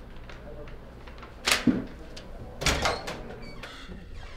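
Sheets of paper being flipped and shaken, with a loud rustle about a second and a half in and another pair just before three seconds.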